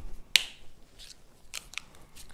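A whiteboard marker being handled: one sharp click about a third of a second in, then a few faint ticks.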